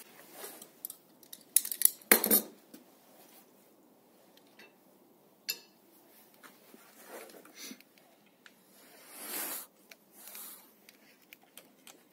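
Metal clinks and clatter from small metal gear being handled, loudest in a cluster of sharp knocks about two seconds in, with scattered lighter clicks and a brief rustle about nine seconds in.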